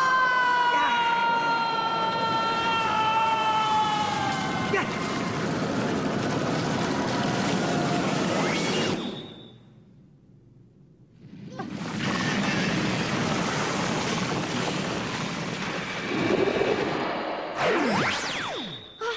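A woman's long, high scream, sliding slowly down in pitch for about four and a half seconds over a rushing noise effect. The rushing goes on after the scream, dies away almost to silence for a couple of seconds in the middle, swells back, and ends with a quick falling whoosh.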